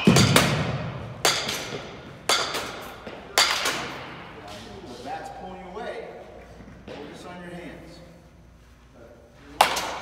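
Baseball bat hitting tossed balls in quick succession: four sharp hits about a second apart, each with a short echo, then after a pause one more hit near the end.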